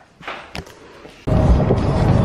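Steady low rumble of road and engine noise inside a moving car's cabin, starting abruptly a little past halfway, after a quieter stretch with a brief knock.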